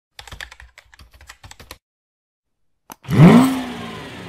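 Intro-animation sound effects: a quick run of keyboard-typing clicks, a single click about three seconds in, then a loud effect whose pitch rises quickly, levels off and fades away.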